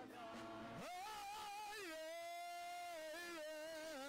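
Gospel worship singing with instrumental backing: a voice holds long notes, sliding up to a higher held note about two seconds in.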